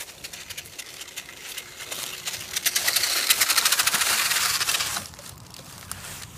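Footsteps crunching through dry fallen leaves, growing louder as they approach and loudest from about three to five seconds in, then stopping suddenly.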